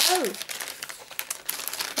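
Plastic shrink wrap crinkling and crackling in irregular bursts as it is peeled off a spiral-bound calendar, a sound called "not pretty". A short spoken "oh" at the start.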